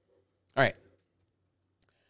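A man briefly saying "All right", otherwise quiet room tone with a faint low hum and a faint click near the end.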